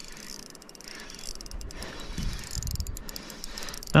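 Spinning reel being wound in, its handle and gears giving a rapid fine ticking that grows more distinct in the second half.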